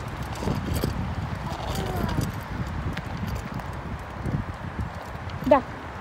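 Child's bicycle with training wheels rolling over asphalt: a steady low rumble with irregular knocks. A man's voice speaks briefly near the end.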